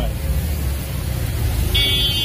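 A steady low rumble with hiss, and a high buzzing tone that sets in near the end.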